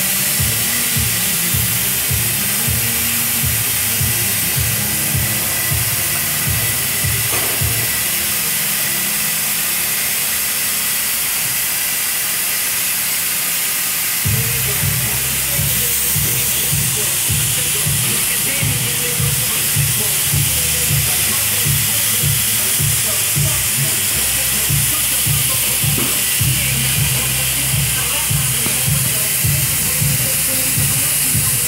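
Steady loud hiss of tire-shop background noise with a low rhythmic throbbing under it. The throbbing drops out for several seconds about a third of the way in, then returns.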